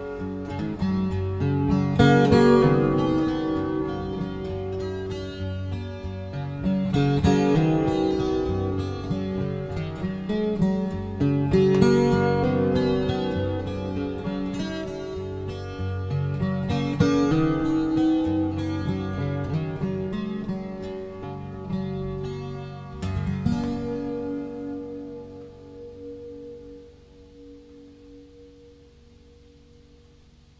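Acoustic guitar played solo, picked with a strong strummed chord about every five seconds, closing on a last chord about 23 seconds in that rings out and fades away.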